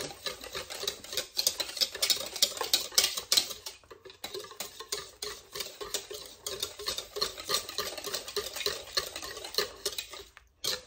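Wire whisk beating a milk, egg, flour and sugar custard mixture in a plastic mixing bowl: rapid, uneven clicking and swishing strokes, with a brief lull about four seconds in.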